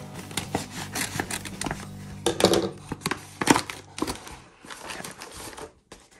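Scissors cutting through a padded paper mailer, a run of sharp snips and paper crackles that are loudest about halfway through, then quieter rustling and crinkling as the paper envelope is pulled open.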